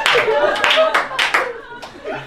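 A few scattered hand claps from the live audience, irregular and dying away after about a second and a half, with voices under them.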